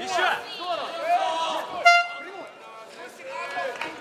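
Short electronic horn blast about two seconds in, sounding the end of an MMA round, with shouting voices in the hall before it.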